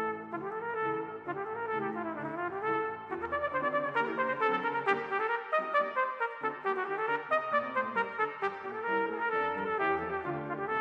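Cornet playing a concert étude: a continuous stream of quick notes, with fast runs that rise and fall.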